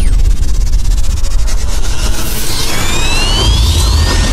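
Cinematic logo-intro sound effects: a loud, deep rumble with a falling sweep at the start and a rising whine that builds over the last second and a half.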